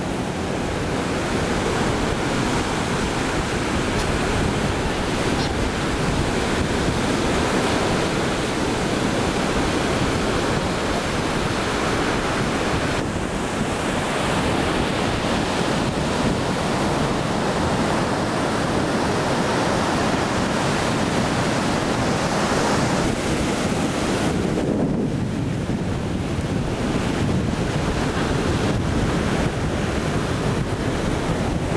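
Surf washing onto a beach, with wind buffeting the microphone. The noise is steady, shifting abruptly about 13 and 25 seconds in.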